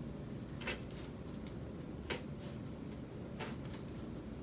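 A punch needle threaded with yarn being pushed through a woven seagrass basket: a short, sharp crackling click each time it pierces the weave, three louder punches and a few fainter ones over the four seconds.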